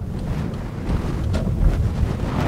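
Wind rumbling on the microphone, a steady low rumble with a few faint clicks.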